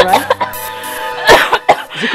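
A woman coughing and choking, with a sharp cough a little past the middle, over steady background music.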